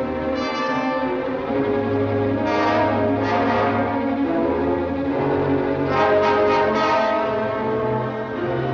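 Dramatic orchestral film music with brass, held chords swelling louder twice, about two and a half seconds in and again at about six seconds.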